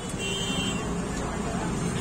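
Steady street traffic noise from scooters and motorbikes passing on a crowded street, a low engine rumble under a general street din.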